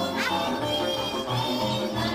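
Live Slovak folk band music for dancing: a fiddle carries the tune over a cimbalom and a double bass playing a steady, even bass line. A quick sliding high note falls early on.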